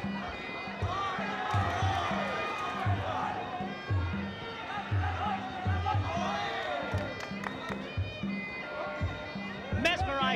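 Traditional Muay Thai fight music (sarama): a reedy oboe-like pipe plays a wavering, gliding melody over a steady drum beat.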